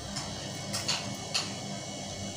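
Faint handling sounds of a cloth tape measure and fabric being moved on a table: three or four soft ticks or rustles over a steady low hum.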